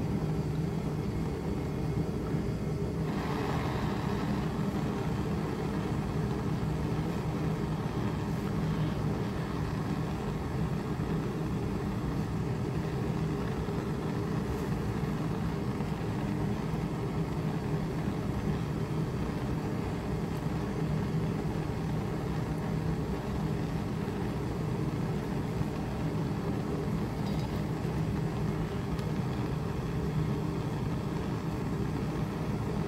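Handheld propane torch burning steadily, a constant low rushing, heating a flint point so that rubbed-on wax melts into it.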